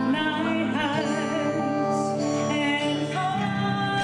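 A woman singing a ballad live into a microphone, holding notes with vibrato, accompanied by electric guitar and a steady low backing.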